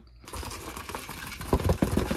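Cardboard box of 3D printer filament being opened and handled: the flaps scrape and rustle, with a few dull knocks in the second half as the box is moved.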